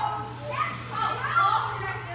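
Several young skaters' voices talking and calling out over one another, with a steady low hum underneath.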